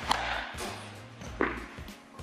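A baseball bat striking a ball off a batting tee with a sharp crack just after the start, then a thud about a second and a half in, over background music.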